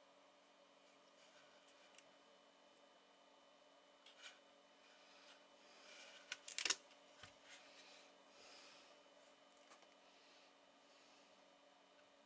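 Mostly near silence, with faint handling sounds of a circuit board and small tools: light rubbing and a few clicks from about four to seven seconds in, loudest as a quick cluster of clicks about six and a half seconds in.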